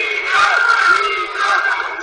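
Large crowd of marchers shouting and chanting together, many voices overlapping.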